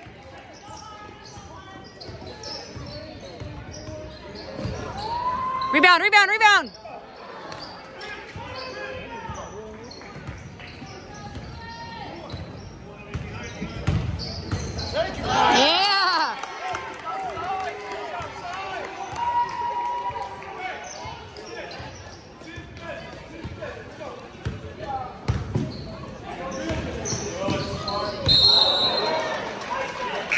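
Live high-school basketball in a large gym: the ball bouncing on the hardwood court, sneakers squealing sharply on the floor twice, and spectators talking and calling out. A short whistle sounds near the end.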